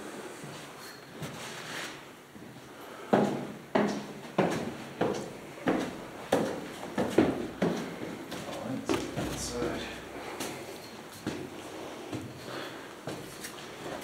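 Footsteps climbing concrete stairs: a regular series of heavy steps, about one and a half a second, starting about three seconds in and growing lighter and more irregular after about eight seconds.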